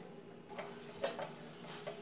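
A few faint light clicks, one sharper about a second in, over a faint steady low hum.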